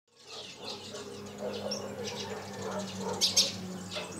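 Small birds chirping and twittering outdoors, fading in at the start, with two louder chirps a little past three seconds. A low steady hum runs underneath.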